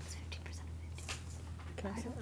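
Students whispering to each other as they confer over a math problem, over a steady low hum.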